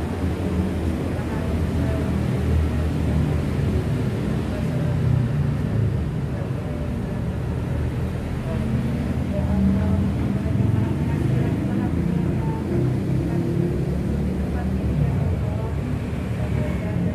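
A voice reciting a group prayer (doa), muffled under a steady low rumble.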